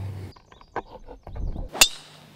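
A golf club striking a ball off the tee: one sharp, metallic click near the end, after a few faint knocks.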